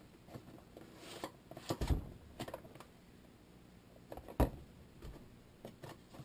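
Cardboard product box being handled and opened: scattered light rustles and knocks, with a sharper single knock about four and a half seconds in.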